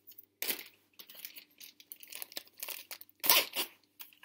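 Packaging crinkling and rustling as it is handled. There is a crinkle about half a second in, then a run of small rustles, then a louder crinkling burst a little over three seconds in.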